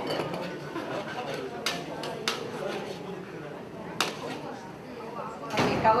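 Metal spatula clinking and scraping against a metal wok as fried noodles are stir-fried, with a few sharp clicks about two and four seconds in and a louder scrape near the end.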